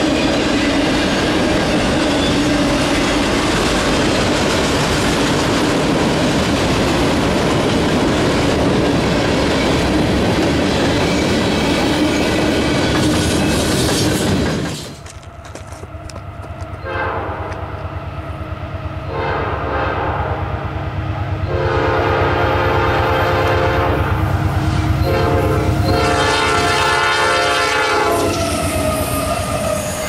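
Freight cars rolling past with steady wheel noise and clickety-clack. Then an approaching locomotive sounds its Nathan P5 five-chime horn in four long blasts over a low rumble that builds.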